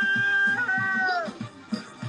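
A man's long, high-pitched, cat-like cry into a cupped hand, held steady, wavering once about half a second in and sliding down in pitch as it stops a little past halfway. Background music with a steady beat runs under it.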